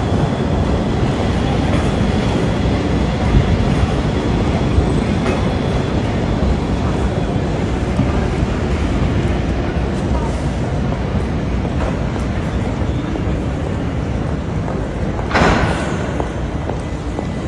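A tram running past on a wet city street, its rail noise blended into steady traffic and street noise, with a short louder burst of noise near the end.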